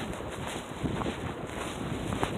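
Footsteps on a packed snow trail, a few steps about half a second apart, over the steady rumble of wind on the microphone.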